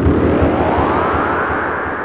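Cinematic sound effect: a sudden loud hit with a deep rumble, then a pitched sweep that rises over about two seconds and levels off as the whole sound slowly fades.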